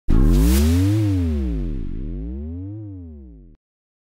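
Synthesized intro sting: a loud low electronic hit that fades away over about three and a half seconds, its pitch sweeping up and down twice, with a short hiss about half a second in. It cuts off suddenly.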